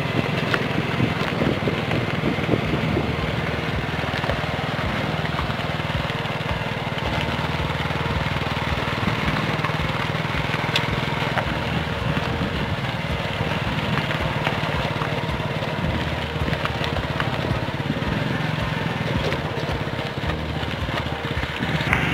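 A motor vehicle's engine running steadily while driving along a rough gravel track.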